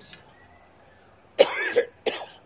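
A single short cough about one and a half seconds in, after a quiet pause.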